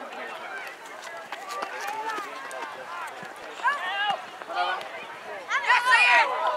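Shouting voices across an outdoor soccer field, several short overlapping calls from players and onlookers, with a louder, high-pitched burst of shouting near the end.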